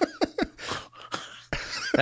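Men laughing: a few short chuckles at the start, then breathy exhales.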